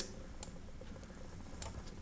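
Two faint computer-mouse clicks, about a second apart, over quiet room tone.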